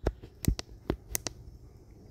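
About five light, sharp taps spread unevenly over two seconds: a fingertip tapping a phone's touchscreen.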